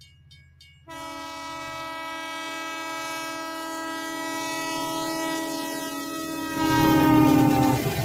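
Train horn sound effect: one long, steady blast starting about a second in and held until near the end, with the rumble of a train swelling loud under it over the last second or so.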